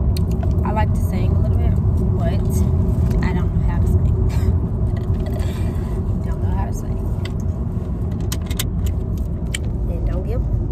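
Low, steady road and engine rumble inside a moving car's cabin.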